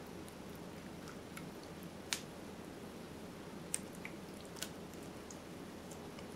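Metal ladle scooping and spreading thick tomato sauce over lasagna noodles in a glass baking dish: quiet wet squishing with a few faint clicks of the ladle against the glass, over low room noise.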